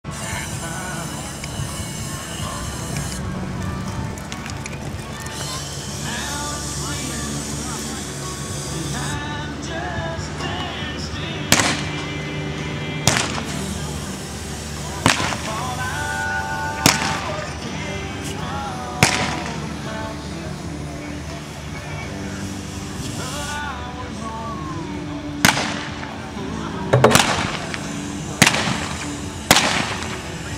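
Revolver shots fired from horseback at balloon targets in cowboy mounted shooting, the single-action revolvers loaded with black-powder blanks. About ten sharp shots, spaced a second or two apart from about a third of the way in, with a pause in the middle and a quicker run near the end.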